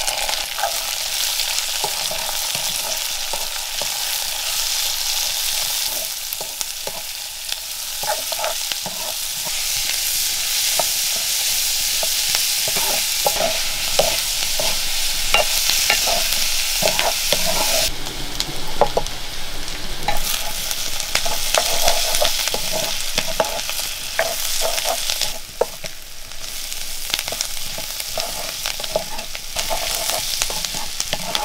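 Chopped shallots sizzling in hot oil in an iron wok-style pan, a steady frying hiss, while a spatula stirs them with frequent knocks and scrapes against the pan.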